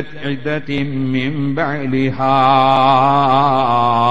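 A man's voice chanting in a melodic reciting style: short drawn-out syllables, then from about halfway a long held note with an even, wavering pitch.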